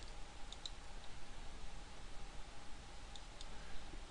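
Faint computer mouse clicks: two close together about half a second in and another a little after three seconds, over a low steady hiss.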